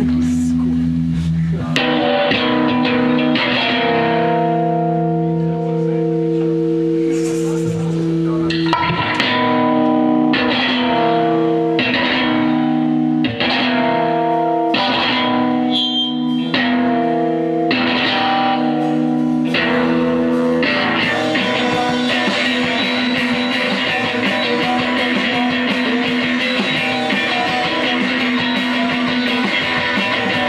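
Live electric guitar played through an amplifier, letting ringing chords sustain and re-striking them about once a second. About two-thirds of the way through the playing becomes fuller and busier, with a steady high wash over the guitar.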